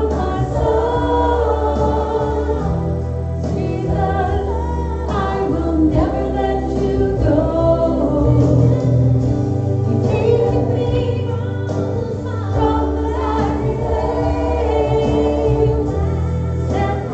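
Contemporary worship song sung by a group of voices over a backing band with a steady bass line, the singing continuing through the whole passage.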